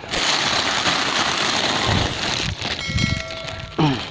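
Clear plastic bags of gift goods rustling and crinkling as a hand handles them, with a few dull knocks; a man's voice begins near the end.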